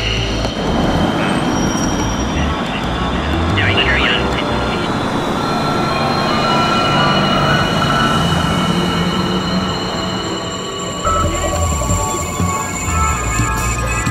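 City street traffic noise, with a large vehicle passing close near the end and steady high-pitched whining tones partway through; voices murmur in the background.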